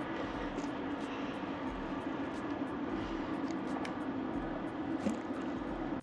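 A steady mechanical drone with a low hum running under it, and a few faint scattered ticks.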